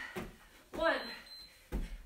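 A woman's voice saying "one" to end a countdown, with dull thuds of feet on a carpeted floor as she jumps out of a plank and gets up, the heaviest thud near the end.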